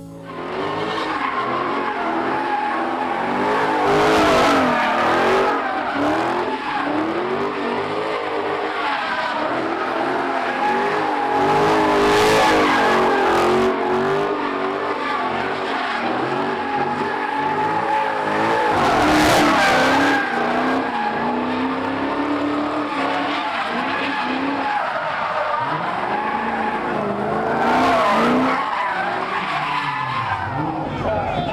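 A car drifting, its tyres squealing in long wavering wails over the running engine. The sound swells louder about every seven to eight seconds.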